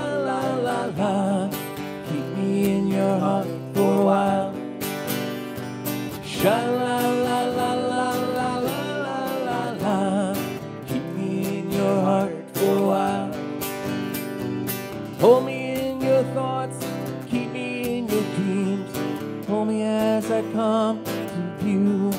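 Two acoustic guitars strummed in a country-style song, under a melody line that slides up into its notes and wavers.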